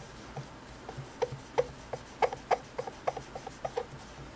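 Cloth rubbing over the glossy black painted finish of a Singer 221 Featherweight sewing machine, wiping off cleaning wax: a quick, irregular run of about fifteen short rubbing strokes.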